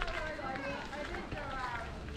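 Indistinct voices of people talking, with no clear words, over a low steady rumble.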